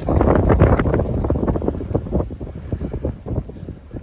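Wind buffeting the microphone in rough gusts, loudest in the first two seconds and then easing off.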